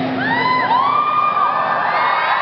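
Concert audience screaming and cheering. Many high voices rise and fall over one another, swelling up a moment in.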